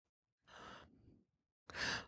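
A narrator's breathing: a faint breath about half a second in, then a louder intake of breath near the end, drawn just before speaking.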